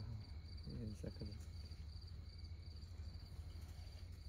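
Crickets chirping steadily, about three short chirps a second, over a low steady hum, with a brief voice in the first second.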